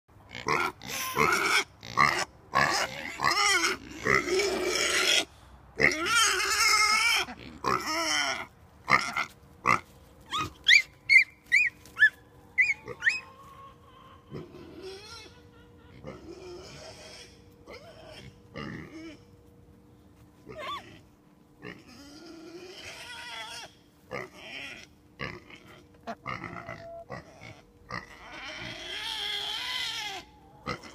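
Black pigs grunting, with a rapid run of loud calls over the first twelve seconds or so, then quieter, scattered calls.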